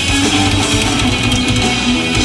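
Punk rock band playing live through a PA: distorted electric guitars, bass guitar and drum kit, loud and steady.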